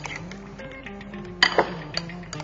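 A metal spoon clinking against the bowl as a chopped salad is stirred, a few sharp clinks with the loudest about one and a half seconds in, over soft background music.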